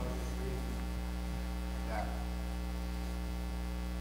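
Steady electrical mains hum with its overtones, a low buzz from the sound system. A brief faint voice is heard about two seconds in.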